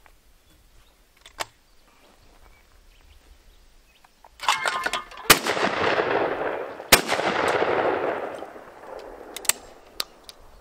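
Double-barrelled shotgun firing twice at a thrown clay target, the shots about a second and a half apart, each followed by a long rolling echo that fades over a few seconds. A short clatter comes just before the first shot, and a metallic click near the end as the gun is opened.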